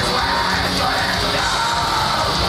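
Live heavy metal band playing at full volume, a harsh yelled vocal over the dense band sound.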